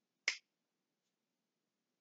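A single finger snap, about a quarter second in.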